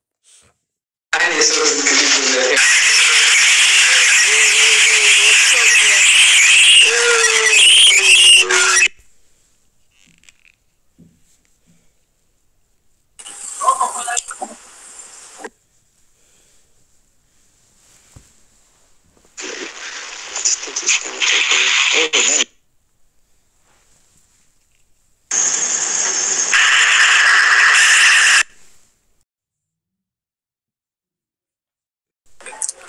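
Loud, harsh voice-like sounds in four bursts, the first about eight seconds long and the others two to three seconds, with no clear words and short silences between them.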